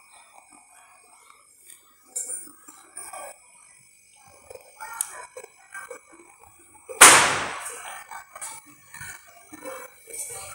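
A firecracker bursts about seven seconds in: one sharp bang that fades over about a second. Fainter scattered pops and knocks come before it.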